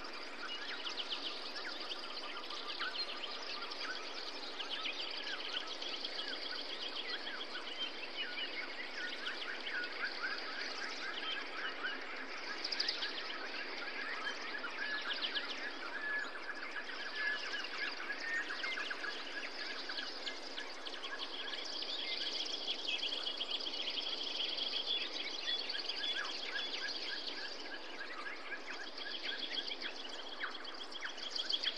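Many small birds chirping and twittering in quick runs over a steady background hiss.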